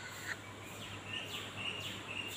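Faint, short high chirps, like a small bird calling, three times over a quiet background with a low steady hum.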